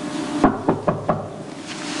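Four quick knocks on a hotel room door, starting about half a second in: room service arriving.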